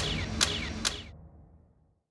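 A run of sharp clicks, about two a second, each trailing a short falling tone, over low music that fades out. The clicks stop about a second in.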